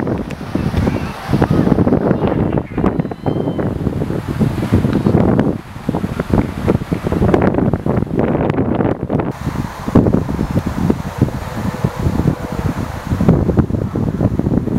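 Gusty wind buffeting the camera microphone: an uneven low rumble that swells and drops.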